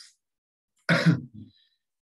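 A man clears his throat about a second in: one short, loud rasp followed by a smaller one.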